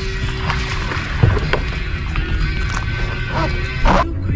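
Background music playing, with two short knocks, one about a second in and a louder one just before the end.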